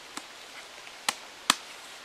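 Three sharp clicks from gear being handled: a faint one at the start, then two loud ones about a second in, less than half a second apart.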